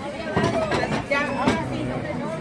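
Voices talking amid background chatter, with a couple of sharp knocks: mostly speech, with no clear sound of its own from the stall.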